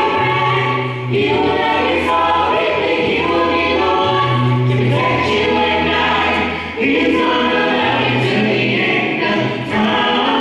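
Gospel vocal group of mixed voices singing in close harmony into microphones, with a deep bass note held for about a second three times.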